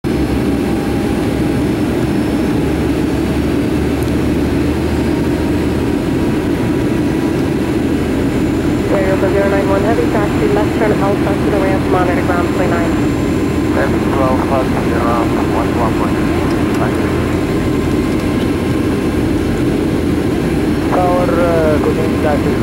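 Steady jet engine and airflow noise heard inside the cabin of a Boeing 757-300 on approach. A voice talks over it from about nine to seventeen seconds in, and again just before the end.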